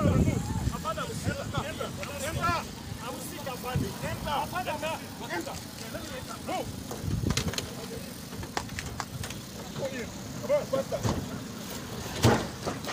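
Indistinct voices of several people calling out in short bursts, heard over a steady low rumble.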